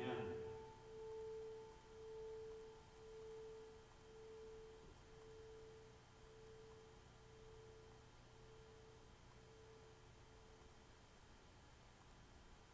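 Small handbell rung once, its single clear tone pulsing about once a second as it rings out and fades away over about ten seconds.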